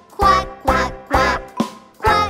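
Cartoon-style duck quacks, "quack, quack, quack," voiced in rhythm with a children's song's music, about two quacks a second.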